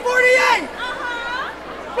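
Young men's voices chanting and calling out in a step-show recitation, with a long call rising in pitch about a second in.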